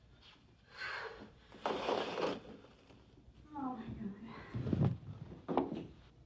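Indistinct, hushed voices that come and go in short stretches, with a brief breathy hiss of noise about two seconds in.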